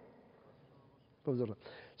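A brief pause in a man's speech, then a short, low-pitched murmured word or vocal sound from a man just past the middle.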